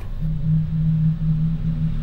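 Street traffic: a low, steady engine hum over a rumble, starting just after the speech stops.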